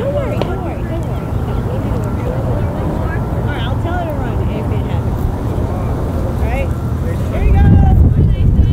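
Scattered distant voices of players and spectators calling out at a softball field, over a steady low rumble that grows louder near the end.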